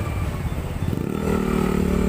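Motorcycle engines idling with a low rumble, and a steadier pitched engine hum coming in about halfway through.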